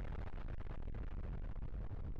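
Steady low rumble from a logo-intro sound effect, with a hiss above it that slowly thins out.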